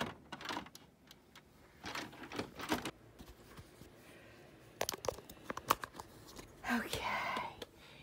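Scattered plastic clicks and rustling as hands work inside an inkjet printer with its scanner unit raised. A short murmured voice comes near the end.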